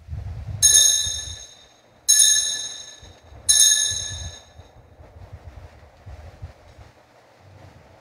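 Altar bell rung three times, about a second and a half apart, each ring high and fading over about a second. It marks the elevation of the chalice after the consecration of the wine.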